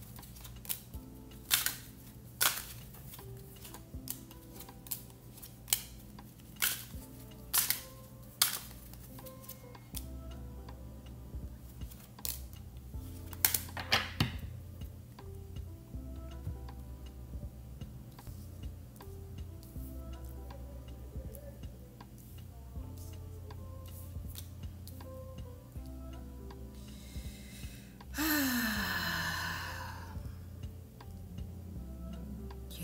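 Tarot cards dealt one at a time onto a wooden table, each landing with a sharp snap, about one a second through the first half, over quiet background music. Near the end a louder rustling swish of about two seconds as the cards are handled.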